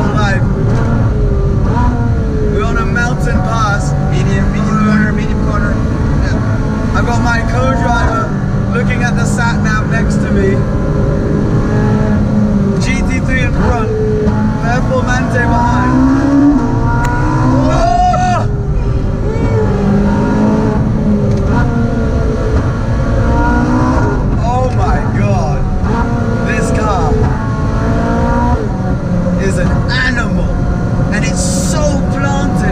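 Ferrari 458 Spider's V8 engine heard from inside the cabin while driving, a steady running note that rises in pitch in places as the car picks up speed. Voices talk over it.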